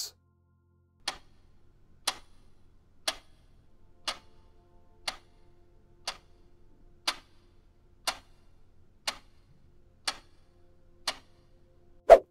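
Quiz countdown timer: a clock-tick sound effect ticking once a second, about eleven ticks, over faint steady tones.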